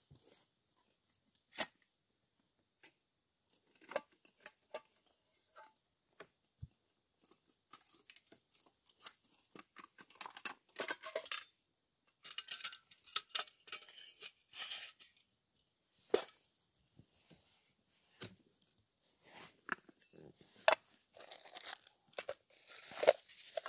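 Aluminium Trangia stove parts being unpacked and set out: scattered clinks and knocks of the pots and pieces, with a plastic bag rustling in bursts around the middle.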